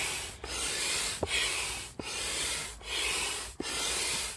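INTEX 68615 large hand pump inflating a vinyl pool float through its hose: air rushes with each stroke, about one stroke every 0.8 s, with a brief dip and click at each turnaround, and alternate strokes sound brighter.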